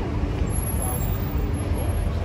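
Steady road-traffic noise with a low engine rumble from passing heavy vehicles.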